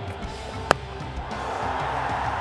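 A single sharp crack of a cricket bat striking the ball, over steady background stadium noise.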